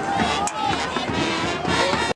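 Football crowd in the bleachers: many voices talking and calling out over a band's brass playing.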